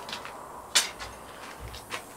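Light metallic clicks and one sharp clink just before the middle as small copper plasma torch consumables (nozzle and electrode parts) are picked up and handled during a consumable change.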